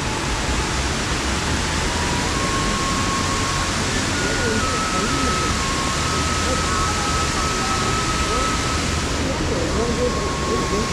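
Steady rushing roar of a large waterfall, the partly frozen Fukuroda Falls, with water still pouring down through the ice into the pool below.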